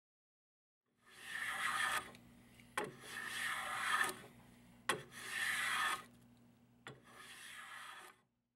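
Wards Master No. 5 jack plane with its sharpened blade taking four strokes along a wooden board, each a rasping swish of about a second. A sharp click comes just before the second, third and fourth strokes.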